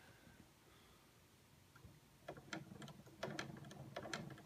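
Near silence at first, then from about halfway faint, irregular light clicks, a few a second, over a low hum. These fit the bent metal tail drive shaft of a scale S-64 Skycrane model turning in its pillow-block bearings.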